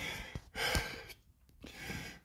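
A man breathing hard after a set of push-ups, with one long sighing exhale about half a second in, then a brief pause before the next breath.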